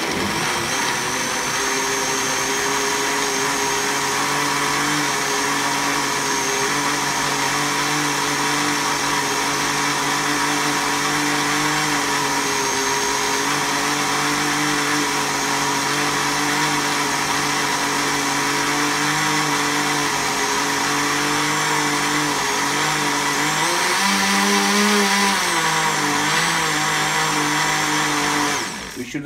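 Countertop jug blender's motor running steadily, blending apple pieces with milk and aloe vera drink into a shake. About three-quarters of the way through, its pitch sags briefly and then recovers.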